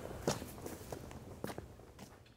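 Footsteps walking away: a few uneven steps that grow fainter and fade out.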